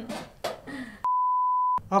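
Voices and laughter, then about halfway in a single steady 1 kHz beep of under a second, edited in with all other sound cut out around it, as in a censor bleep.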